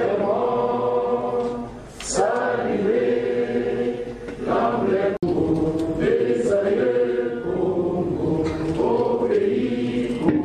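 A crowd of many voices singing together in long held notes, phrase after phrase, with a sudden brief break about five seconds in.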